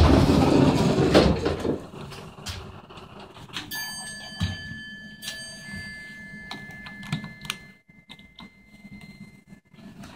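Westinghouse hydraulic elevator: a loud rumble as the car shakes for the first two seconds, then quieter running and door noise as the doors slide open. A steady high electronic tone sounds from about four seconds in and holds for several seconds.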